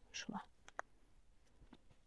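Mostly quiet room with a brief soft, whispered voice sound at the start, followed by a sharp faint click and a fainter tick.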